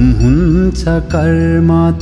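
Nepali Buddhist devotional song: a solo voice sings a line that slides in pitch over steady instrumental backing, with a new phrase beginning about a second in.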